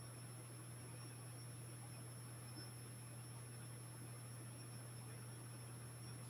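Quiet room tone with a steady low hum and a faint, steady high-pitched whine; nothing starts or stops.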